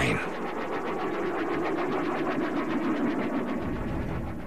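Sound effect for the spinning rocket-tipped rotor of an animated Focke-Wulf Triebflügel: a steady jet-like roar with a rapid, even pulsing.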